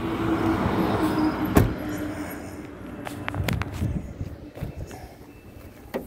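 Clicks and knocks of a vehicle hood being unlatched and raised: a sharp knock about a second and a half in, then a cluster of clicks around three and a half seconds in. A steady hum runs under the first half.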